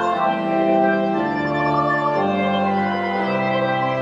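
Church organ playing the final hymn in sustained chords, the held notes changing about once a second.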